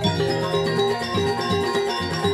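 Balinese gamelan ensemble playing: bronze metallophone keys struck with mallets ring out quick runs of notes over lower sustained tones.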